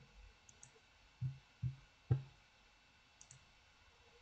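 Scattered clicks of a computer keyboard and mouse on a desk: a few soft thumps about a second to two seconds in, the last one sharpest, and a couple of faint high ticks.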